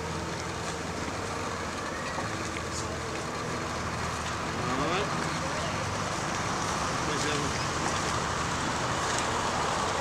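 Steady low rumble of background traffic, with faint voices now and then.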